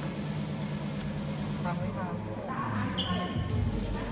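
Faint indistinct talking over a steady low hum.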